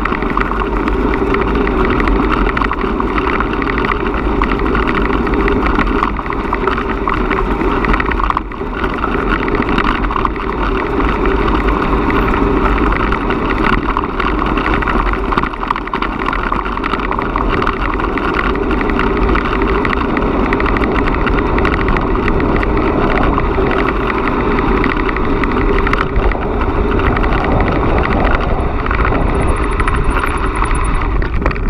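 Steady rolling rumble of a bicycle moving at about 12 km/h over a dirt forest track and worn pavement, mixed with wind noise on the action camera's microphone.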